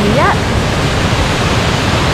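Waterfall pouring into a plunge pool: a loud, steady rush of fast-falling water.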